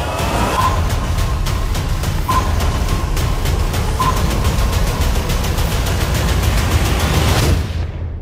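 Action trailer soundtrack: driving music with a heavy low pulse and a quick run of sharp percussive hits, with a high ringing tone recurring three times. It cuts off abruptly near the end.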